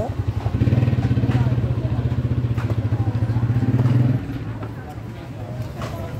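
A motorcycle engine running close by with a fast, even beat, louder for most of the first four seconds and then dropping off to a lower level.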